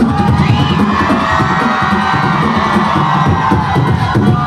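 Beatboxing through a concert PA, the rhythm carrying on while a crowd cheers loudly over it.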